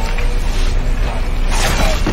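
Horror-film fight-scene sound mix: the steady low roar of a house fire under the noises of a struggle, with a louder rush of noise about one and a half seconds in.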